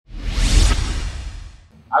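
Whoosh sound effect with a deep bass boom, coming in suddenly, peaking about half a second in and fading away over the next second, as a logo intro sting. A man's voice starts right at the end.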